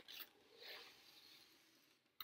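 Faint scraping rustle of a cardboard mailer box as its lid is pulled open.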